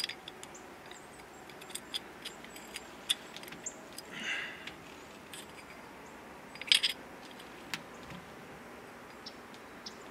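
Light clicks and clinks of knapped stone pieces knocking together in the hands as a freshly struck flake and the biface it came off are handled and fitted back together. There is a brief rustle about four seconds in and a short run of louder clinks just before seven seconds.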